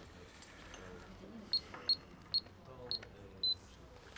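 Handheld card payment terminal beeping as its keys are pressed: five short high beeps about half a second apart, the last one a little longer.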